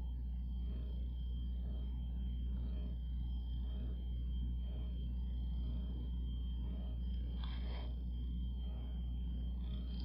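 Steady low hum with a thin, steady high whine above it: background noise of the room or recording, with no audible sound from the resin pour. A faint brief rustle about seven and a half seconds in.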